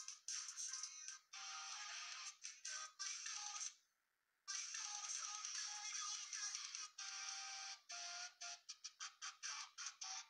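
A recorded song playing thin and tinny, with no bass, through a small phone speaker, as it is skipped through to find a part: it stops briefly about four seconds in, then cuts in and out in quick stop-start snatches near the end.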